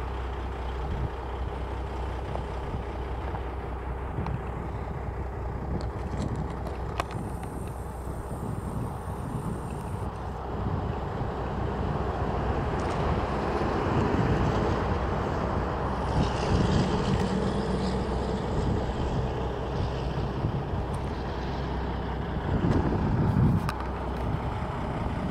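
Road traffic on a highway, a steady rumble that swells in the middle, with a semi-truck drawing close near the end.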